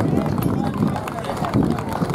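Audience applauding, many hands clapping in a dense steady patter, with voices of the crowd mixed in.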